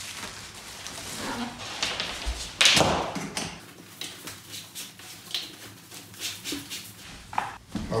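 Handling noise as a corrugated plastic hose is fitted between a cloth dust bag and a drywall sander: the fabric rustles and the hose and plastic fittings give scattered clicks and knocks, with one louder scraping burst a little under three seconds in.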